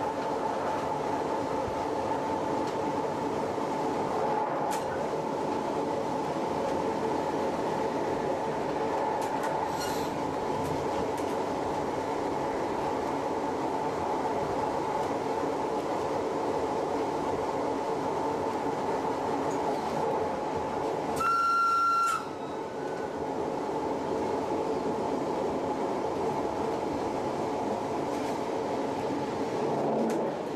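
Metre-gauge electric train running steadily, heard from the driver's cab, with a steady whine over the rolling noise. About two-thirds of the way through, the horn sounds once, a single-pitched blast about a second long and the loudest sound.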